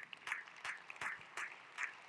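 A man clapping his hands at an even pace, about three claps a second.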